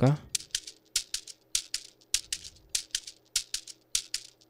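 A programmed shaker loop playing back on its own in a beat at 100 BPM: crisp shaker hits in a steady pattern, two to a beat, a little over three hits a second.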